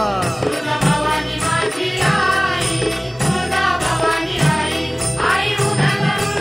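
Marathi devotional gondhal song to Amba Bai: a gliding melody line over a steady, repeating drumbeat.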